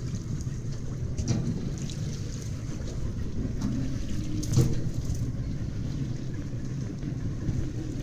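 Steady low rumble of wind on the microphone and sea water moving around a small boat, with a few faint knocks and a slightly louder moment about halfway through.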